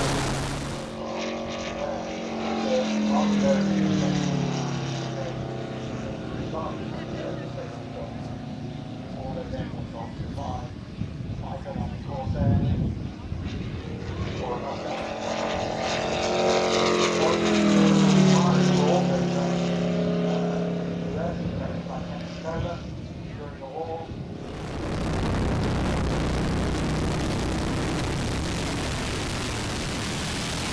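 Radio-controlled scale model warbird flying past twice, its engine and propeller note falling in pitch as it goes by; each pass swells to loud and then fades. At the start and in the last few seconds there is a steady rush of wind and engine from a camera mounted on the model.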